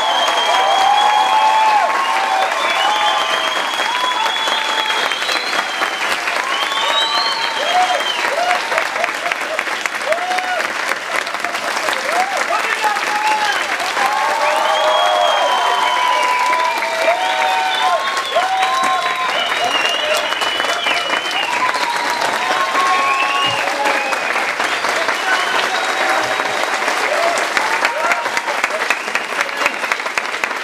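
A large audience applauding and cheering, many voices shouting over dense clapping. Near the end the clapping falls into a steady rhythm, about two or three claps a second.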